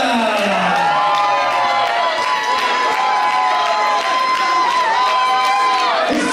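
Ring announcer's voice over the microphone drawing out one long held note for about five seconds, after a falling call in the first second, over a cheering crowd.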